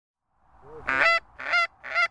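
Geese honking: a quick series of loud honks, starting about half a second in.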